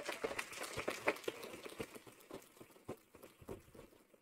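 Audience applauding, the claps thinning out and fading away toward the end.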